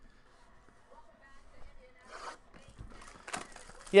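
Plastic shrink-wrap crinkling and tearing as it is stripped off a sealed trading-card box, faint at first with short, louder rustles about two and three seconds in.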